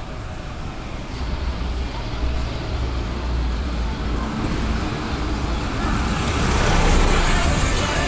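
Street traffic: a motor vehicle passes close by, growing louder to a peak about seven seconds in, over a steady low rumble of city traffic.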